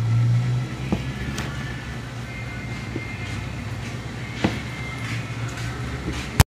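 A kitchen knife tapping a plastic cutting board a few times as a cheese bar is sliced into sticks, over a steady low hum.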